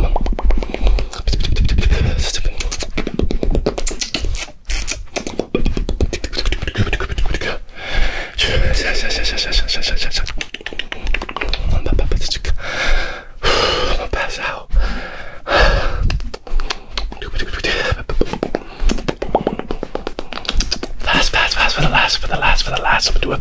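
Fast, aggressive ASMR mouth sounds: a continuous stream of rapid clicks, pops and smacks made right against the ear-shaped capsules of a binaural microphone, with bursts of low rumble.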